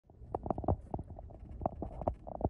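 Footsteps on packed snow and ice: a string of uneven soft knocks over a low rumble of wind or handling on the microphone.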